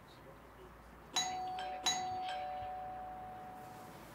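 Doorbell chime ringing: two struck notes about a second in, less than a second apart, their tones ringing on and slowly fading.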